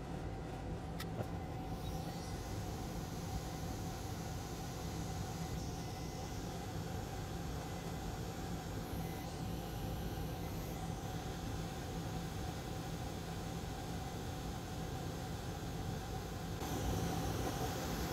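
Bench fume extractor fan running steadily: an even whir with a faint low hum.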